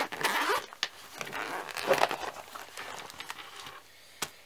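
The zipper of a nylon Condor EMT pouch being drawn open in a few rasping pulls, fading off near the end as the pouch is fully unzipped.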